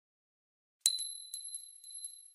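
A metal coin dropped onto a hard surface, used as a sound effect: one sharp ringing strike partway in, then about five lighter bounces under a steady high ring that slowly fades.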